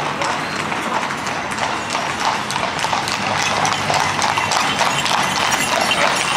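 Hooves of several trotting horses pulling two-wheeled carts clip-clopping on the tarmac road, a quick irregular patter of hoofbeats that gets slightly louder as the horses come closer.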